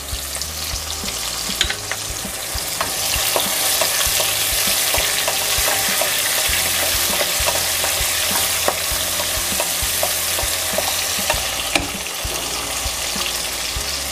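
Freshly added chopped onions sizzling in hot oil with cashews, tomatoes and green chillies, stirred with a spatula that clicks and scrapes against the pan. The sizzle builds over the first couple of seconds and stays strong.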